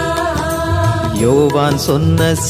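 Tamil Christian devotional song: a singer holds a melodic line in a chant-like style over a steady low accompaniment, with the voice bending and wavering through an ornamented phrase in the second half.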